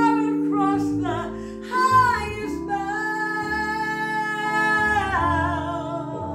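A woman singing a Christmas song over instrumental backing, her voice with vibrato, holding one long note through the middle that slides down about five seconds in.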